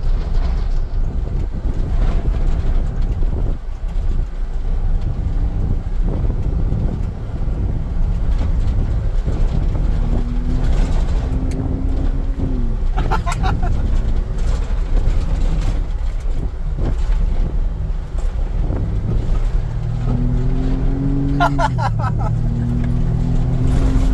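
A vehicle driving fast on a gravel road, heard from inside the cabin: a steady rumble of tyres and wind. Twice the engine note rises as the vehicle accelerates, then drops suddenly as it shifts up.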